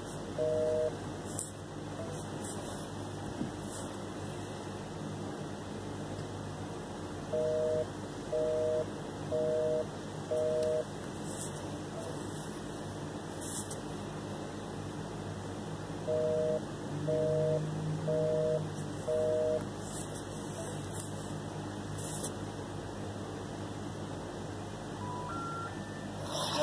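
Telephone busy tone heard through a smartphone's speakerphone: sets of four short two-note beeps about a second apart, with several seconds of line hiss between the sets. Near the end, the stepped-up tones that come before a recorded intercept message begin. The call is not getting through.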